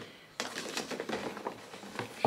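Paper and cardboard rustling and crinkling as papers are pulled out of a cardboard box, starting about half a second in.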